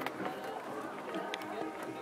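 Indistinct talking with music in the background, and a couple of brief sharp clicks.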